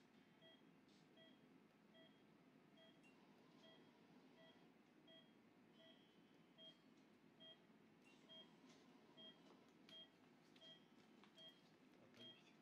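Faint, regular beeping of an anaesthesia patient monitor, a short tone a little faster than once a second, pacing the heartbeat of the dog under surgery. A few faint clicks come in the second half.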